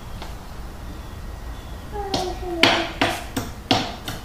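Hammer driving a nail into the wood of a birdhouse kit: four quick blows, starting a little past halfway.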